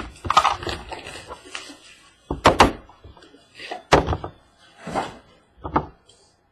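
Cardboard box of trading cards being opened by hand: a crackling, tearing rustle of its seal and packaging, then a handful of sharp knocks and thuds as the lid and box are handled against a tabletop.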